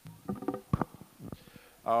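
Handling noise on a handheld microphone: a few short thumps and rubs in quick succession. A man starts to speak near the end.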